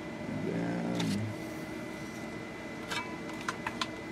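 A short low hum from a voice about half a second in, then a sharp click and, near the end, a quick run of light clicks and taps from small tools and parts being handled on a workbench. A faint steady high whine sits underneath.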